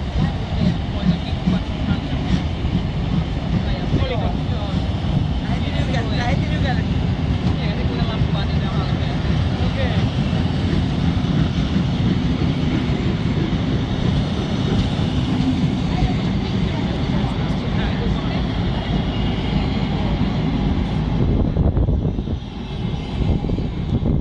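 Vintage railway passenger coaches rolling past on the rails: a steady, loud wheel-and-rail rumble that drops away near the end as the last coach goes by.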